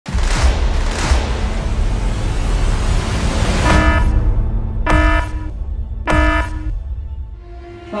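Cinematic trailer sound design: a deep, loud rumble with two whooshes in the first second, then three short horn-like blasts about a second apart.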